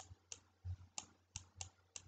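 Faint, light clicks, about six at uneven spacing, from the input device drawing shapes on the on-screen slide.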